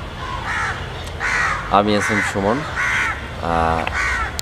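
Crows cawing outdoors, several short harsh caws spaced through the few seconds, with a man's voice in between.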